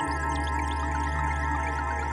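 Ambient electronic music on synthesizers: held drone tones, with a deep bass note entering suddenly at the start and holding steady, and scattered small high blips above.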